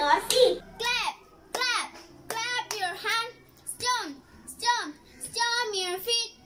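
A young girl singing a children's action song unaccompanied, in short pitched phrases at a steady beat.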